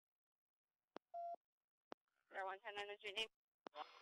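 Police radio traffic: transmitter clicks, a short beep just after a second in, and about a second of radio voice in the second half.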